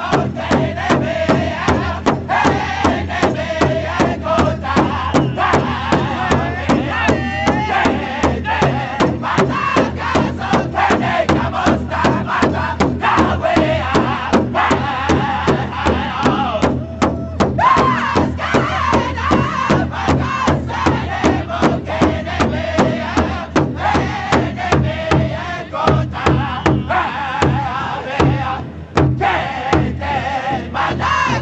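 Powwow drum group singing in unison, the men's voices held high over a large shared drum struck together in a steady beat of about two to three strokes a second. The singing briefly drops out a little past the halfway point while the drumming carries on.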